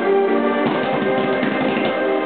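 Instrumental background music with sustained tones. About two-thirds of a second in, it turns busier, with a dense run of rapid strokes over the held notes.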